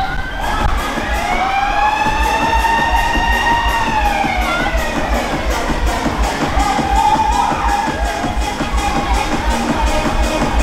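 Loud fairground music with a steady bass beat and crowd noise. In the first few seconds a siren-like wail rises and falls once.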